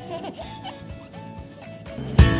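A baby giggling softly near the start, over a quiet, simple tune of background music.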